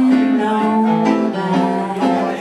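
A woman singing live, holding long sustained notes over instrumental accompaniment.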